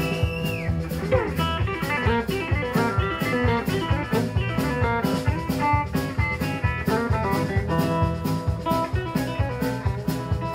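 Live blues-rock trio with a Delaney electric guitar playing lead over bass and a steady drum beat, with no vocals. A high bent note ends just after the start, the guitar slides down about a second in, and then runs of quick notes follow.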